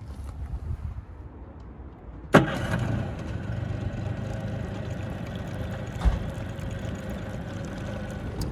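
A 2006 Honda 50 hp four-stroke outboard running steadily, coming in suddenly a little over two seconds in, with one short low thump about six seconds in. Before the engine comes in there is only a quiet low rumble.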